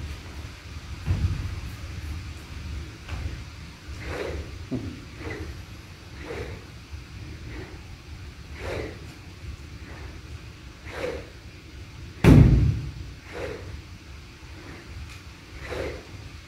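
Golf club swung back and forth in a continuous drill, a short swish roughly every second or so. A low thump comes about a second in, and a much louder thud about twelve seconds in as the club strikes the ground, which the coach puts down to the swing being driven by the arms instead of the shoulder turn.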